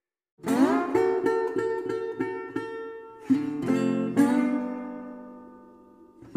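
Instrumental music track of strummed acoustic guitar. After a brief silence, a run of quick repeated chords starts about half a second in, changes chord twice, and the last chord rings out and fades.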